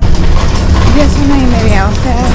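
Inside a moving city bus: steady engine and road rumble, with a person's voice talking over it.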